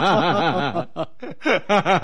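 People laughing: a quick run of short chuckles, about seven a second, then a brief lull and more bursts of laughter in the second half.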